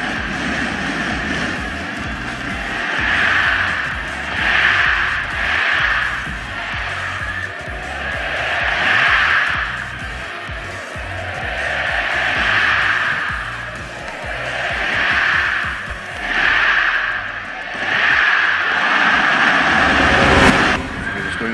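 Large arena crowd cheering through a badminton rally, the noise rising and falling in repeated swells, about one every second or two.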